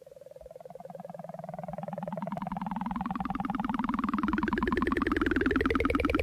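Synthesizer intro of a 1980s rock song fading in from silence: a sustained chord that grows steadily louder while its tones sweep slowly upward, with a fast, even pulsing throughout.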